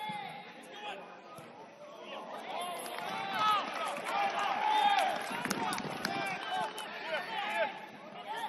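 Several voices calling and shouting across a football pitch, overlapping one another, busiest and loudest through the middle. A few sharp knocks are heard among the shouts about halfway through.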